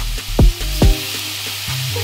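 Beef slices frying in a hot oiled wok, the sizzle building in the second half, under background music whose deep, downward-sweeping bass kicks, about two in the first second, are the loudest sounds.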